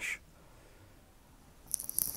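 Near silence: room tone after the last word. Near the end, faint high-pitched rustling with a few light clicks starts.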